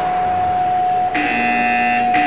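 Electronic countdown buzzer signalling the start of a robot combat match: a harsh buzz begins about a second in over a steady tone, the first of a series of timed buzzes.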